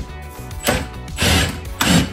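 Cordless drill driving a bolt to mount a wall charger, in two short bursts in the second half.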